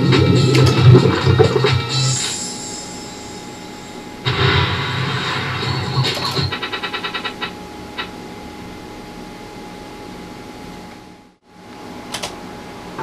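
Bally Wulff Baba Jaga slot machine's electronic game sounds: loud jingle music for the first two seconds, then a new burst of sound about four seconds in as the reels spin, ending in a quick run of beeps and a click around seven to eight seconds. The rest is quieter.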